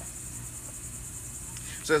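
Insects chirring steadily in a continuous high-pitched drone.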